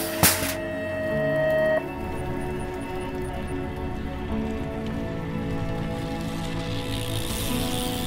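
BMX starting gate slamming down with a sharp bang at the very start, under the start system's long final beep, which holds steady until about two seconds in. After that, background music.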